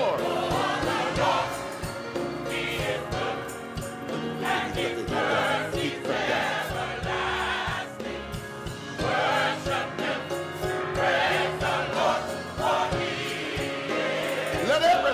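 Gospel choir singing with band accompaniment over a steady beat.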